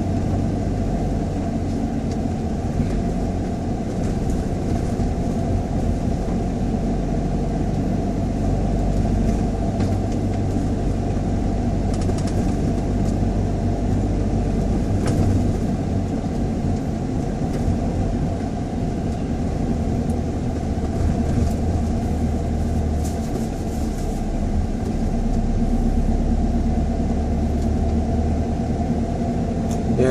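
A car being driven at steady city speed, heard from inside the cabin: a continuous low rumble of engine and tyre noise that holds even throughout.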